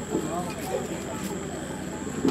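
People talking in short, indistinct phrases, with a faint steady high-pitched whine underneath.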